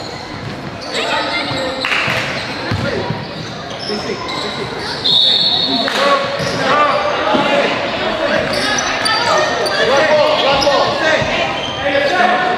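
Basketball game in a gym: a ball bouncing on the court amid voices of players and spectators calling out, echoing in the hall, with a short high squeal about five seconds in.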